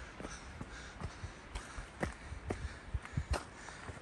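Footsteps of a hiker walking briskly up a rocky, rooty forest trail, about two steps a second.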